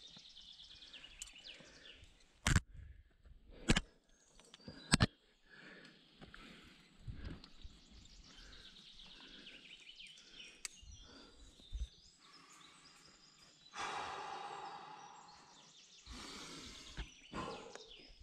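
A climber's gear and breathing on the rock: three sharp clicks in the first five seconds, typical of carabiners and quickdraws knocking as he climbs, and a long hard exhale about fourteen seconds in. Faint birdsong can be heard behind.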